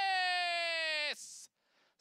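A race caller's voice shouting one long, drawn-out word as the horses reach the finish line, its pitch slowly falling. It breaks off about a second in with a short hiss, followed by a brief gap.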